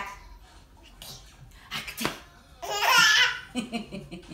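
A baby squealing with laughter in one strong, high burst about three seconds in, with a few short softer sounds after it. A couple of sharp taps come shortly before.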